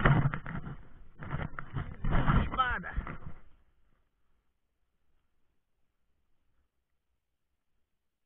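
A person's voice in excited, wordless exclamations with sliding pitch for about three and a half seconds, then it stops and all goes silent.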